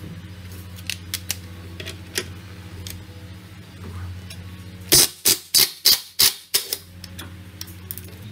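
Cordless impact wrench hammering off the drive-pulley (variator) nut on a Vespa Sprint 125's CVT, in about seven short, loud bursts over a second and a half starting about five seconds in. Before it, a few light clicks as the tool is handled and fitted to the nut.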